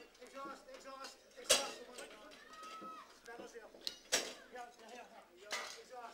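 Faint background voices with two sharp metallic knocks, about a second and a half in and again about four seconds in: tools and metal parts clanking as the tractor's wheels and parts are tightened up.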